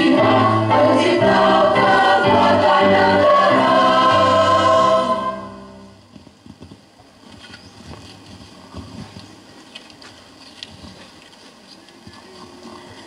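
A mixed choir singing a slow song and holding its final chord, which fades out about five seconds in. After that only a quiet background remains, with a few faint knocks.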